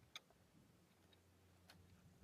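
Near silence with two faint, sharp metal clicks, one just after the start and one near the end, from hands pressing the plunger and working the muzzle cone of a G41 rifle's Bang gas system.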